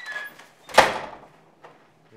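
A glass-paned interior French door being pulled shut, closing with one sharp, loud knock and a short ringing tail a little under a second in.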